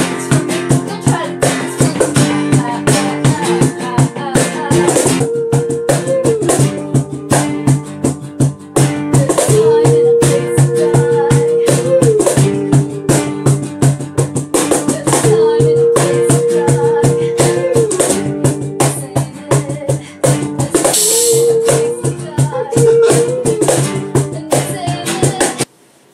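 Acoustic band rehearsal: a strummed acoustic guitar and a cajon slapped by hand keep a steady beat under a woman singing long held notes that bend at their ends. The playing stops abruptly near the end.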